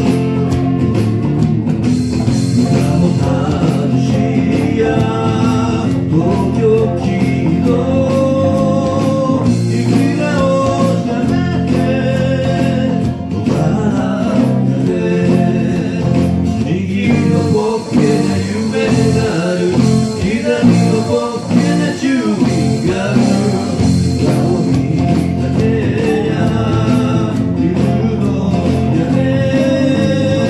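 A man singing a Japanese song, backed by acoustic guitar, electric bass, electric guitar and keyboard, all played by the same musician on separate tracks.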